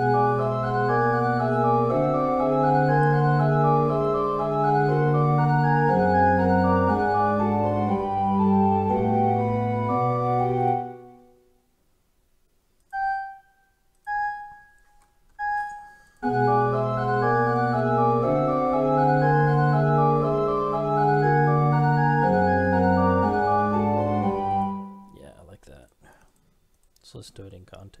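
Software playback of a two-voice organ fugue passage with a pipe organ sound, a steady running line over held bass notes. It stops about 11 seconds in, three short single notes sound one by one as a note is re-pitched, and the passage then plays again until a few seconds before the end, where a few faint clicks are heard.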